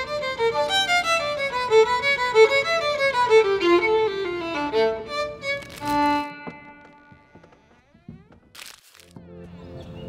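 A violin plays a quick melody of short bowed notes. About six seconds in it stops on a louder held note that rings out and fades. A short burst of noise follows near the end.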